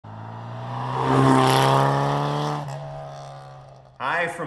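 An Austin-Healey Bugeye Sprite driving past, its steady hum swelling to its loudest about a second and a half in and then fading away.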